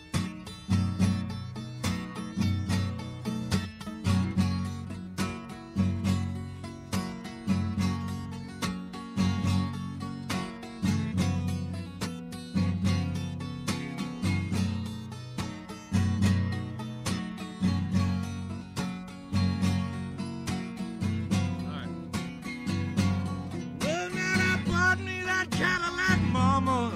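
Solo acoustic guitar playing an instrumental break in a country-blues song, a steady repeating bass line under picked treble notes.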